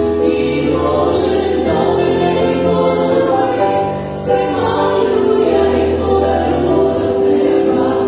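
A small group of women singing a Christian worship song together in harmony, with piano accompaniment holding sustained low notes.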